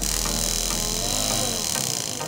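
Small 12 V brushed DC motor with a paper fan blade, running under a homemade MOSFET speed controller. It hums steadily, then slows and falls away near the end as the dimmer knob is turned down.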